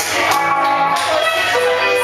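Live band playing, with electric guitar to the fore.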